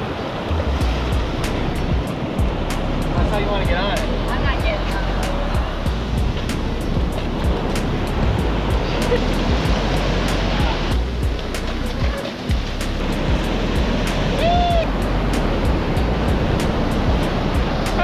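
Ocean surf washing up on the beach, under background music with a steady beat. A few brief voice shouts come through about four seconds in and again near the end.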